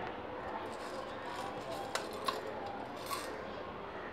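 A few light clicks and taps from small kitchen items being handled, three sharp ones in the second half, over a steady background hiss with faint voices.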